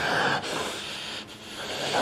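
A rustling, breathy hiss, louder in the first half and dipping briefly just past the middle.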